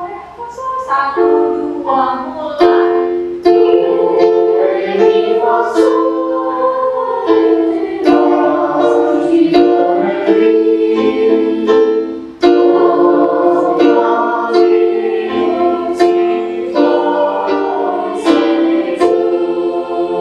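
A choir of young voices singing together, holding notes in sung phrases, with one brief break about twelve seconds in.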